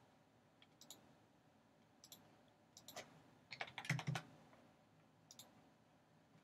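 Faint computer clicks, single ones about a second apart, with a quick burst of keyboard keystrokes about three and a half to four seconds in.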